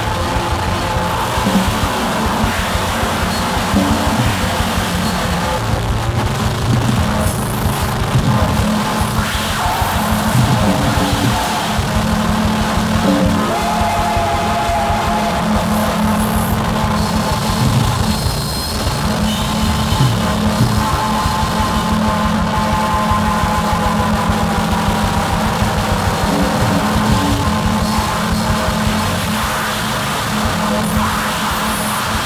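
Live experimental music: an acoustic drum kit played continuously over dense electronic synthesizer drones and noise, with held tones sustained underneath.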